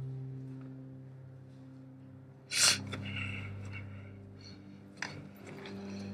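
Horror-trailer sound design: a low, steady droning chord that slowly fades, then a sudden loud hissing burst about two and a half seconds in, followed by fainter rustling and a short sharp click near the end.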